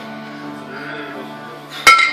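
Background music plays steadily. Near the end, two kettlebells knock together once with a sharp clank as they are brought down from behind the head to the chest.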